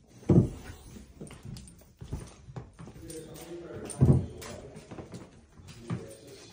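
Footsteps on old wooden attic floorboards: two heavy thuds about four seconds apart, with quieter knocks and shuffling between.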